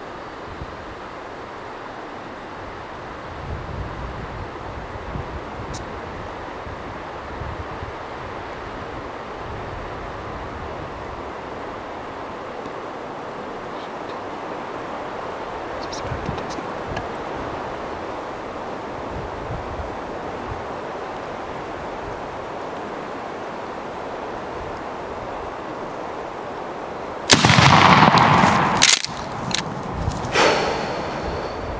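Steady wind noise, then near the end a single very loud shotgun shot fired at a turkey, its report rolling on for over a second.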